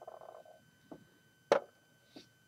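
A hand handling a plastic LEGO build: a short rattle at the start, a faint tap, then one sharp click about one and a half seconds in.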